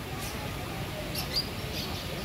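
A few short, high-pitched squeaky bird chirps from the aviary, spread over two seconds, above a steady low background rumble.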